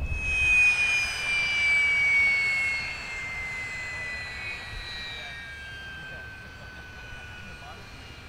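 Aircraft passing overhead: a turbine-like whine that slowly falls in pitch and fades as it moves away.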